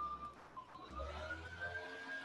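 Faint high tone that glides upward in pitch about halfway through and then holds, over quiet room tone.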